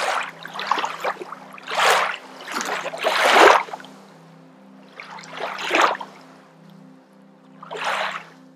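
Slow ambient background music: a low held drone with soft, water-like swishing swells, several close together in the first half and fewer later.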